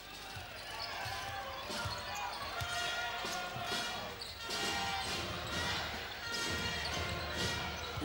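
Basketball being dribbled on a hardwood court, a run of short bounces, over steady arena crowd noise with voices.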